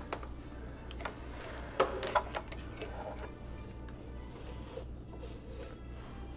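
Metal fork knocking and scraping against a plastic food container, a few short clicks with the loudest clatter about two seconds in, over a steady low hum.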